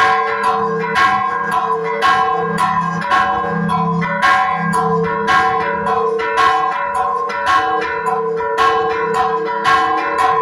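Church bells rung in a fast repique: a large fixed bell and a second bell above it struck by rope-pulled clappers, several strokes a second in a lively rhythm, their ringing tones overlapping and sustained between strokes.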